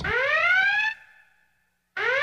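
An electronic alarm whoop: a tone rises in pitch for about a second and cuts off, then silence, and the same rising whoop starts again at the very end.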